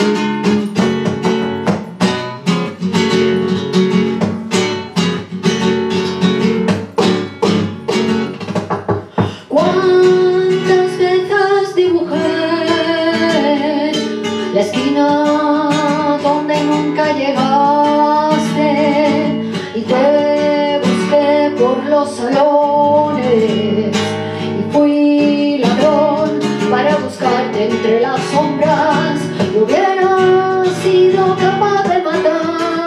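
Flamenco guitar strummed on its own for about nine seconds, then a woman's voice comes in singing over the guitar accompaniment.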